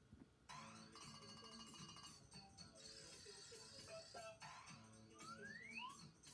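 Faint jingle music from a TV channel ident, played through a television's speaker and picked up in the room. It starts about half a second in after a short lull and ends with a rising glide.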